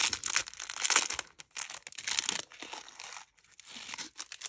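A thin clear plastic packet crinkling in the hands as it is pulled open and handled, in a run of irregular crackles that ease off near the end.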